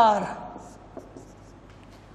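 Marker pen writing on a whiteboard: faint strokes with a few light ticks of the pen tip about a second in, following the tail of a spoken word at the start.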